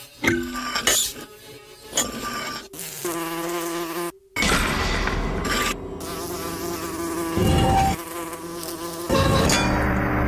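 A housefly buzzing in several bouts, its pitch wavering as it darts about, with a brief cut-out a little before halfway.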